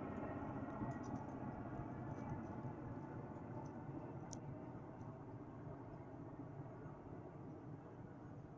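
Distant military helicopter flying over, a low rumble of engine and rotors that slowly fades as it moves away.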